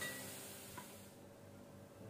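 Faint sizzle of potato pieces frying in oil in a steel kadai, fading out about a second in and leaving near silence.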